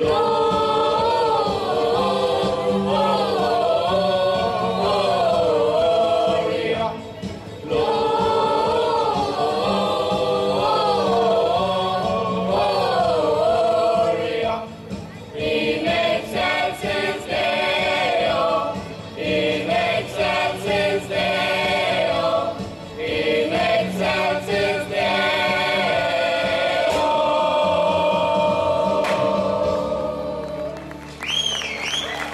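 Mixed choir of women and men singing a Christmas carol in three-part harmony, in phrases with short breaks between them, ending on a long held chord.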